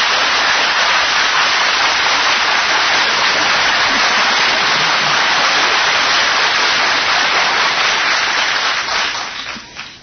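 Studio audience applauding steadily, dying away near the end.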